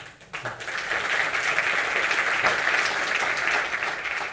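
Audience applauding at the close of a talk: a crackle of many hands clapping that builds within the first second and then holds steady.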